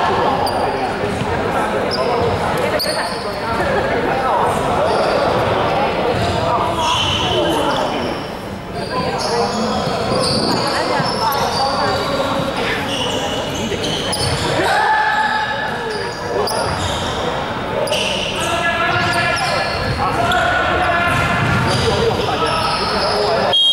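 Basketball game sounds in a large, echoing gym: a ball bouncing, short high sneaker squeaks and players' indistinct calls.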